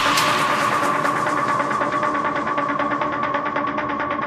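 Electronic dance music from a DJ mix going into a breakdown: the deep kick drum drops out at the start, leaving a held synth chord under fast, even pulses. A filter gradually cuts away the treble.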